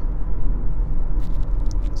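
Steady low rumble of road and engine noise inside a moving Nissan car's cabin at highway speed.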